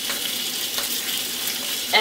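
Bacon and hot dogs frying in a griddle pan on an electric stove: a steady sizzling hiss with a few faint crackles.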